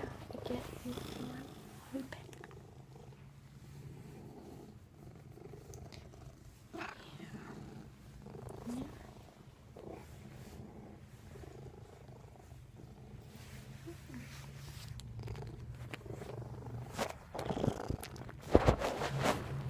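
A domestic cat purring steadily, held right up against the microphone, with louder rustling from handling near the end.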